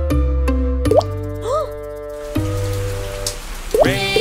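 Children's song backing music with cartoon raindrop plop sound effects: a quick rising blip about a second in, an arching one just after, and a few more near the end.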